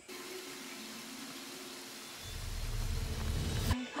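Soundtrack of a TV drama episode playing: a steady hiss with a faint held drone, then about halfway through a deep rumble builds and cuts off suddenly just before the end.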